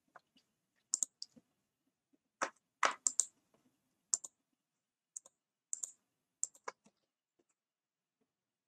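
Irregular, fairly quiet clicks of a computer keyboard and mouse being worked: about a dozen sharp taps, the loudest cluster around three seconds in, stopping about seven seconds in.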